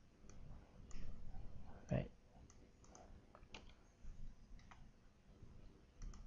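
A handful of faint, scattered computer mouse clicks, made as CorelDRAW is operated.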